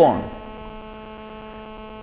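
Steady electrical hum, a buzz with a stack of steady overtones, picked up through the microphone and sound system; a man's last word fades out just at the start.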